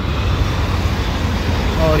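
Steady road traffic noise from cars and motor scooters passing on a busy multi-lane city road.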